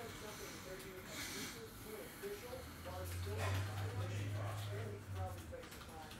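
A stack of trading cards being flipped through by hand, with a short rustle about a second in and a few light clicks, under faint murmured speech. A low hum comes in for a couple of seconds near the middle.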